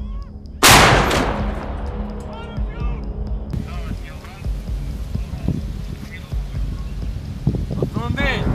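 A towed howitzer firing one round about half a second in: a single sharp, very loud blast with a long rumbling tail that dies away over a few seconds. Repeated high chirps sound before and after it.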